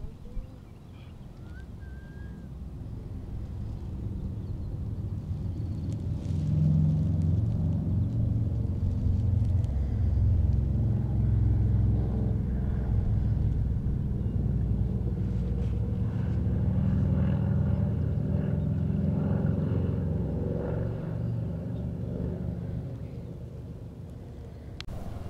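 Low engine rumble of a passing motor vehicle, swelling over the first several seconds, holding for about fifteen seconds, then fading near the end.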